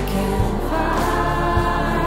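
A choir singing sustained chords in a song, with a beat marked by regular thuds about once a second; the chord changes about a third of the way in.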